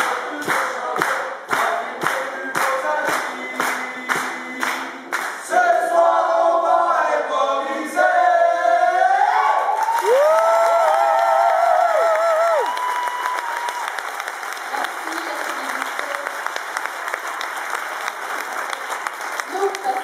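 A group of voices singing a team anthem without instruments, over a brisk steady beat of about two or three strokes a second for the first few seconds, then swelling into loud held closing notes with vibrato that cut off about twelve seconds in. Audience applause follows.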